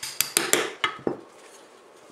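Small hammer tapping a pin punch to drive out a trigger-group retaining pin from a Remington 870 shotgun receiver: about five light, sharp metal-on-metal taps in quick succession over the first second or so.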